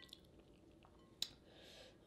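Faint eating sounds, close to near silence: quiet chewing and wet handling of seafood in sauce, with one sharp click about a second in and a faint hiss near the end.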